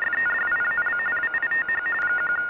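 Electronic telephone ring: two high tones warbling rapidly in one continuous trill.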